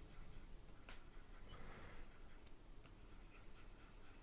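Faint scratching of a pen stylus drawing short strokes on a pressure-sensitive drawing tablet, the scratchy hiss coming and going with each stroke.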